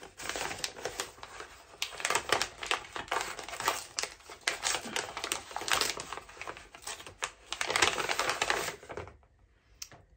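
Gift wrapping being torn open and crinkled by hand, a fast irregular run of crackles and rustles that stops about a second before the end.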